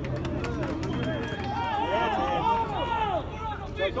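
Several voices shouting over one another at an outdoor football match, rising about a second and a half in as play moves toward goal.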